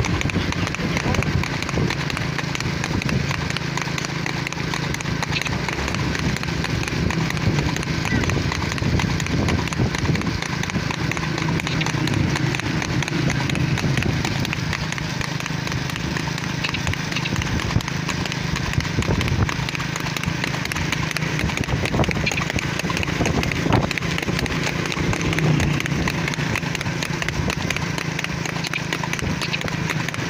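A harness horse trotting fast on a paved road, its hooves clip-clopping rapidly and continuously, with voices in the background.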